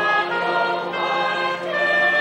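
A choir singing, several voices holding notes together in chords that move every fraction of a second.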